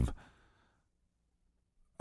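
A spoken word trails off into a short, faint breath lasting about half a second, then near silence.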